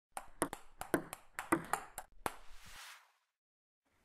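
A quick, uneven run of about ten sharp clicks over two seconds, ending in a short whoosh that fades out.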